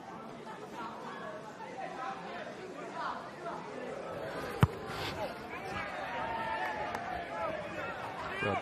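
Players' voices calling out across a rugby pitch, with a single sharp thud about halfway through: a boot kicking the ball as a penalty is kicked to touch.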